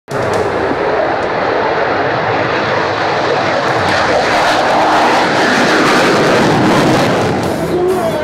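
F-16 fighter jet engine running loud on takeoff, a dense steady noise that grows louder and hissier about halfway through.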